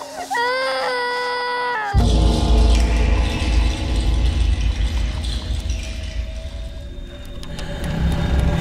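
Horror film trailer soundtrack: a single held high-pitched cry lasting about a second and a half, rising at the start and falling away at the end. From about two seconds in, a loud, deep rumbling score begins abruptly and runs on.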